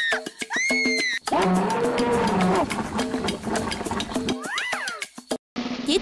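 Comic sound effects over background music with a steady beat: a high arching cry in the first second, a low drawn-out call about a second and a half long, and a quick rising-and-falling glide near the end.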